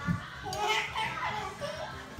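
Young children's voices: a high-pitched squeal that falls in pitch about halfway through, with other child vocalising around it and a low thump at the start.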